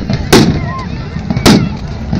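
Two loud gunpowder bangs, the first about a third of a second in and the second about a second later, each sharp and sudden with a short ringing tail, over a background of crowd voices.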